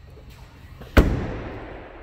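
The trunk lid of a 2013 Chevrolet Camaro ZL1 slammed shut about a second in: one loud, sharp bang that trails off over about a second, the lid closing solidly.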